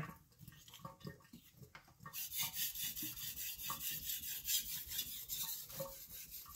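Steel knife blade being stroked back and forth across a wet 3000-grit Naniwa Chosera whetstone: a repeated rasping hiss with each pass. The strokes are faint at first and become quicker and steadier about two seconds in. This is the 3000-grit stage, with passes made until a fine burr forms on the edge.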